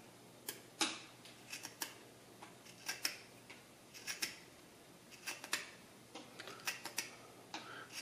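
Fixed-blade Tina grafting knife slicing the angled whip cut through a small fig scion: faint, irregular short clicks and scrapes of the blade paring the wood.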